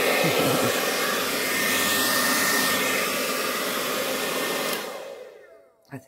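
Hair dryer blowing steadily, pushing poured acrylic paint out across a canvas. It is switched off just before five seconds in, and its motor winds down to silence.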